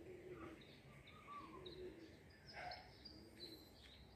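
Faint birds calling: low, repeated warbling calls mixed with short, high chirps, against quiet background noise.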